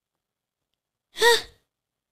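Silence, then about a second in a woman's single short, breathy exclamation, "Ha?", its pitch rising and falling.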